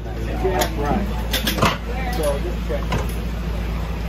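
Indistinct voices talking over a steady low rumble that begins abruptly at the start, with a few sharp clicks.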